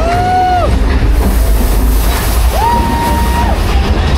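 Ride train rumbling steadily along its track through a dark-ride cave, with two held high tones, each under a second long, that glide up at the start and fall away at the end: one right at the start and a second about two and a half seconds in.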